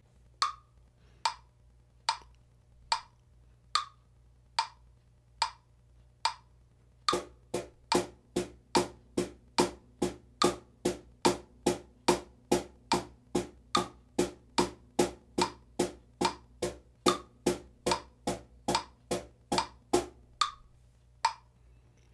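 A metronome clicking at 72 beats per minute for two bars, then a wooden cajon joins in even eighth notes, two strokes to each click, struck with one hand at the top edge for the high tone.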